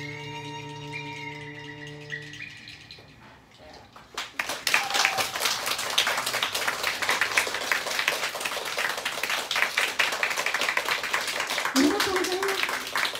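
The band's last held chord, violin and contrabass, rings out and fades over the first couple of seconds; after a short hush, audience applause breaks out about four seconds in and carries on steadily.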